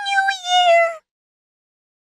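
A very high-pitched, cutesy anime-style voice holding one drawn-out syllable that sinks slightly in pitch and stops about a second in.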